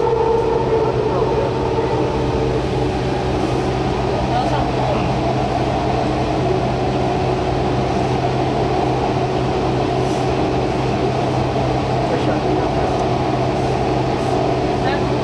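Taichung MRT Green Line train running along the track, heard from inside the carriage: steady running noise with a constant low hum and a motor whine that fades out about two seconds in.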